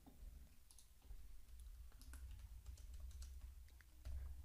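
Faint computer keyboard typing: a quick run of light key clicks starting under a second in, over a low steady hum.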